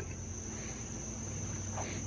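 Crickets trilling in a steady, unbroken high-pitched chorus.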